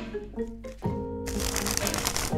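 Background music with sustained notes, joined in the second half by a rapid crackling riffle of a deck of playing cards being flicked through by hand.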